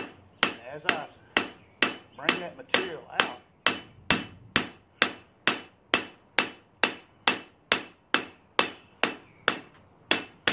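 Hand hammer striking a red-hot steel knife blank on an anvil in a steady rhythm, a little over two blows a second, each blow ringing briefly: hand-forging a knife blade.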